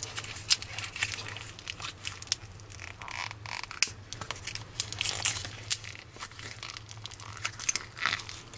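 Green foam-bead molding foam being squeezed and kneaded by hand in its thin plastic tub, giving an irregular run of small snapping and crackling sounds. A faint steady low hum lies underneath.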